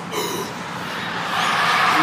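Road traffic: a passing vehicle approaching, its noise growing steadily louder over the second half.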